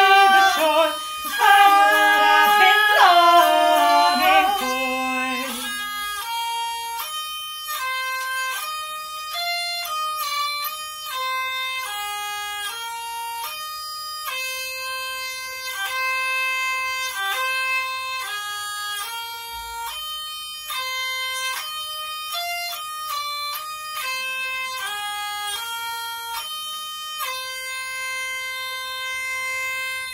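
Hurdy-gurdy playing a folk melody, its wheel-bowed strings giving a bright, reedy tone as the notes step from one to the next. A woman's sung line carries over it for the first four seconds or so, then the instrument plays alone.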